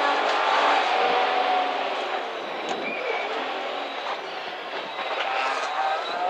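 Cabin sound of a Nissan 350Z rally car's V6 engine pulling at speed, with heavy road and tyre noise; the engine eases off in the middle and pulls harder again near the end.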